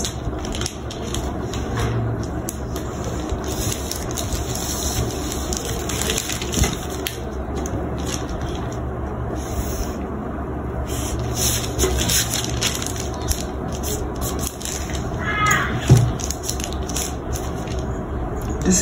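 Brown pattern paper rustling and crackling under the hands, with a marker scratching along a metal ruler as lines are drawn. Steady, with many small clicks throughout.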